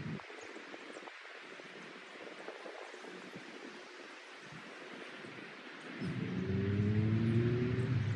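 Faint outdoor hiss, then about six seconds in a motor engine comes in loud, its several tones climbing slowly in pitch as it speeds up.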